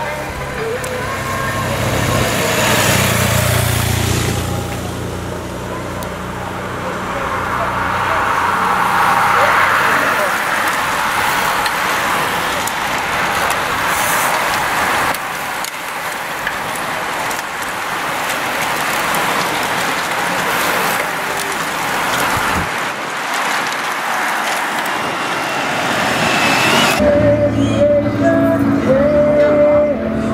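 A touring motorcycle's engine passes close by in the first few seconds. A bunch of racing bicycles follows with a whir of tyres and freewheels. About 27 s in, the sound cuts to a steadier one with held tones.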